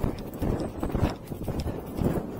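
Arabian horse galloping on a grass track, its hoofbeats landing as dull thuds about twice a second.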